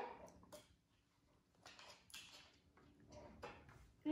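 Near silence with a few faint taps and small handling sounds: short bamboo sticks and Play-Doh balls being fitted together on a wooden tabletop.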